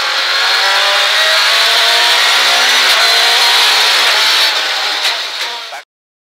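Ford Escort Mk2 rally car's engine running at a fairly steady pitch, heard from inside the cabin. The sound cuts off abruptly near the end.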